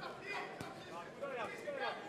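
Voices calling out around a kickboxing ring, with two sharp knocks of strikes landing, one at the start and one about half a second in.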